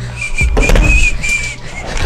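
A thin, high whistle: several short notes at nearly the same pitch, slightly wavering, over a low rumble that starts about half a second in.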